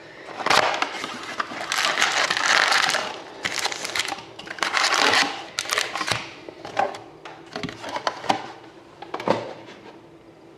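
A cardboard box of hockey card packs being torn open, with a long stretch of cardboard and wrapper rustling, followed by the packs rustling and tapping down on the table as they are pulled out of the box and stacked.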